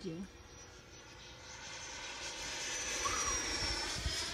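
Electric ducted fan of a Freewing 90mm F-16 RC jet passing overhead: a high whine that grows steadily louder as it approaches, its pitch falling slightly near the end as it goes by.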